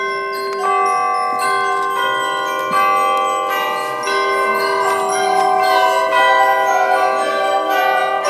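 High school concert band playing a fanfare: sustained chords enter together at the start and swell louder in steps.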